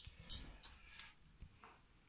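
About six light, irregular clicks and ticks as the stepped attenuator's rotary switch and its metal parts are handled.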